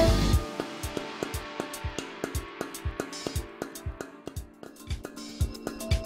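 A tenor saxophone's held note stops just after the start, leaving the electronic backing track alone: a sparse, quieter drum beat of about three hits a second over a faint steady low tone.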